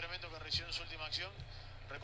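Faint man's speech, the commentary of the football highlight video playing quietly in the background.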